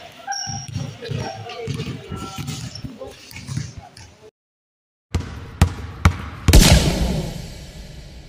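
Several people talking over each other on an open court for about four seconds, then a short silence and an edited logo sting: a few sharp hits building to one loud impact that fades slowly.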